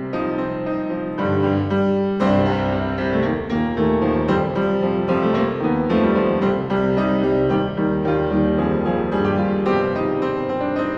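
Solo piano improvisation: chords over deep bass notes, growing fuller and louder about two seconds in.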